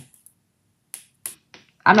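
Tarot cards being handled as one is drawn from the deck and laid on the table: two or three short, light snapping clicks of card stock.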